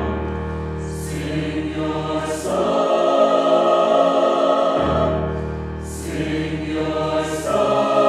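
Mixed choir singing a slow piece in held chords, swelling in volume a few seconds in, with sung 's' sounds standing out four times.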